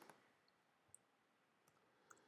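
Near silence with a few faint clicks of computer keys as numbers are typed into a field.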